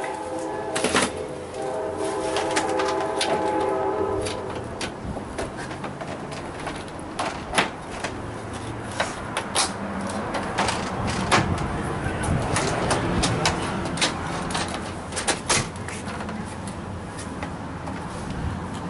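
Irregular clicks and knocks from a retractable screen door's bottom track being handled and fitted into place at the door threshold. A steady pitched tone sounds over the first few seconds.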